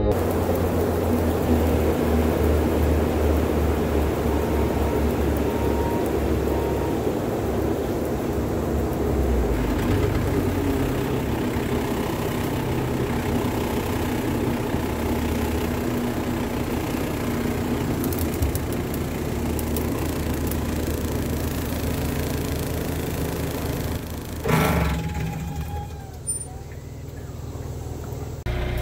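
Bobcat T650 compact track loader's diesel engine running steadily at working speed, driving its hydraulic Blue Diamond brush cutter. About 24 s in there is a brief loud clatter, then the sound drops much quieter as the machine is shut down.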